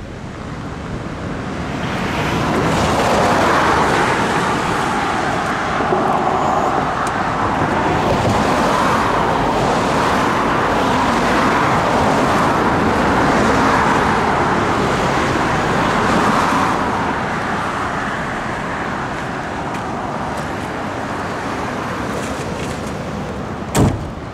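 Road traffic passing steadily on the highway, swelling louder in the first few seconds and easing off in the second half. A sharp knock sounds near the end.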